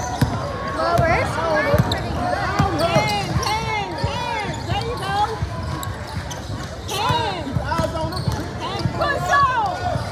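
A basketball being dribbled on a hardwood gym floor while sneakers squeak sharply and repeatedly, with voices echoing through the large hall.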